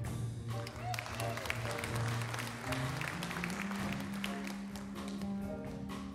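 Small band with piano and electric guitar playing a slow ballad with a held bass line, while the audience applauds over the music; the clapping dies away about four seconds in and the band plays on.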